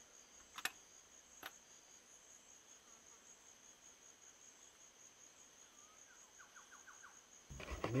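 Faint, steady high chirring of crickets, a night-time insect chorus, with two soft clicks about half a second and a second and a half in.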